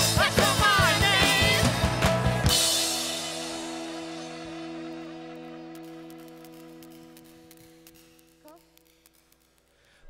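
Live drums-and-vocals pop band playing loud with singing, ending on a final hit about two and a half seconds in; a held chord then rings on, fading slowly to near silence over about seven seconds.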